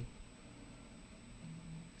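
Quiet room tone: a faint steady hiss with a thin, high, constant whine and no distinct events.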